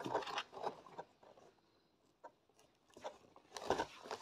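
Cardboard box packaging handled and opened by hand: scattered light rustles and taps, quiet for about two seconds in the middle apart from one click.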